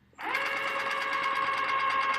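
Electric chocolate fountain switched on: its motor starts suddenly a fraction of a second in and runs with a steady hum.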